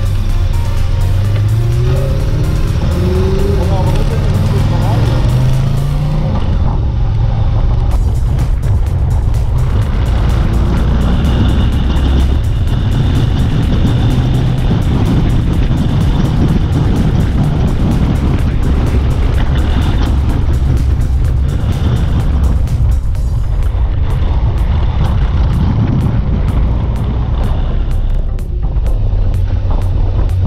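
Motorcycle under way, heard from on board: engine and wind noise, with the engine pitch climbing through several upshifts in the first few seconds. Background music plays underneath.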